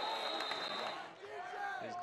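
Referee's whistle blowing one steady, high note for about a second as the tackle ends the play, over stadium crowd noise of shouting voices.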